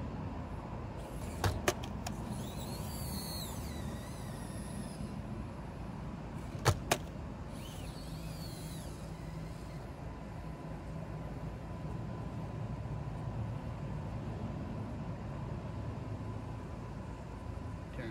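Axial SCX24 micro crawler's small electric motor and geartrain running steadily under load as it climbs a steep ramp. Two pairs of sharp clicks come about a second and a half in and again about seven seconds in.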